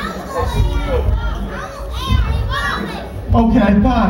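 Children's voices in the audience calling out and shouting, high and overlapping. A louder man's voice comes in near the end.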